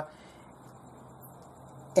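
Gas burner under a stainless steel hangi barrel, fed from an LPG bottle, running with a faint, steady hiss.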